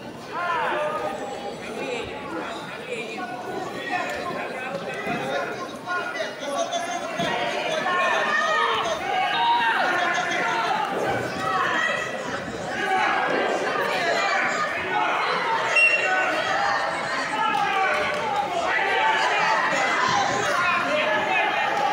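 Several voices shouting and calling out at once in a large echoing sports hall, as coaches and spectators do beside a wrestling mat; the shouting grows louder about eight seconds in.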